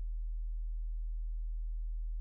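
A steady low hum on one deep tone, with nothing else heard.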